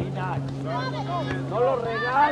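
Several spectators' voices talking and calling out over one another, with a steady low hum underneath.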